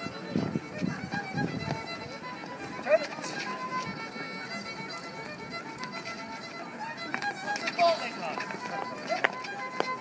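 Solo fiddle playing a dance tune for rapper sword dancing, over onlookers' talk. A few sharp knocks from the dancing stand out, the loudest about three seconds in and again near eight seconds.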